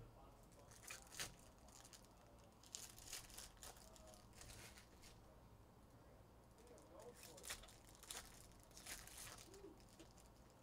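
Faint tearing and crinkling of foil trading-card pack wrappers as packs are ripped open and handled, in short crackly bursts: a few around the first second, a cluster in the middle and more near the end.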